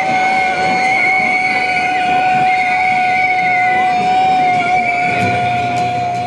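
Steam whistle on a model steam engine blowing one long steady note. Guitar music comes in near the end.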